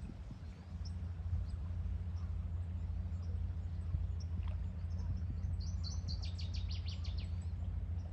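A small songbird sings a quick trill of about eight short high notes just past the middle, with a few faint scattered chirps, over a steady low rumble.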